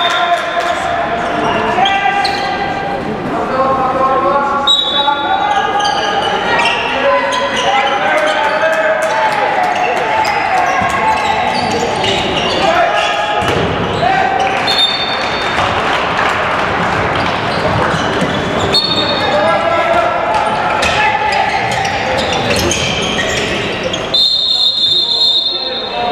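Sound of an indoor handball match: the ball bouncing on the court floor amid shouting from players and spectators, echoing in a large sports hall.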